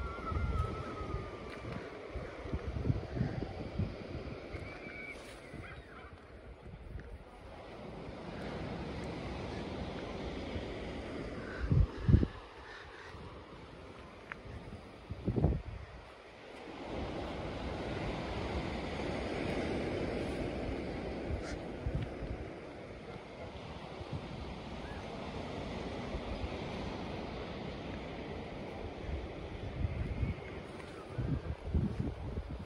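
Outdoor wind on the microphone and the wash of surf from the bay below, swelling and easing. Two brief low thumps stand out about twelve and fifteen seconds in.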